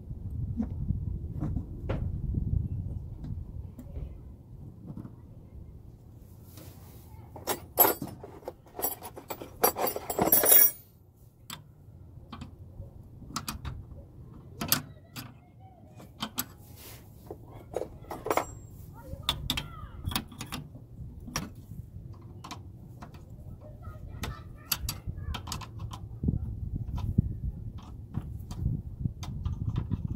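Metal fuel-line fittings and hand tools clinking and clicking while a new inline fuel filter is fastened in place. The clicks are scattered, with a dense clatter lasting about a second near the middle.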